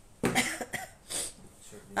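A woman coughing: two short bursts about a second apart.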